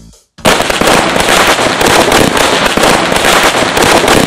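A string of Anil 50 x 125 Deluxe electric crackers going off, starting about half a second in as one loud, dense, unbroken volley of rapid cracks.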